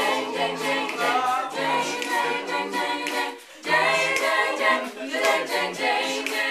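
A cappella vocal group of mixed voices singing a pop arrangement: held chords over a low, repeating sung bass line. The singing breaks off briefly about three and a half seconds in.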